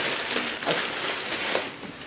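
Plastic packaging rustling and crinkling as groceries are handled, starting suddenly, with a few light knocks.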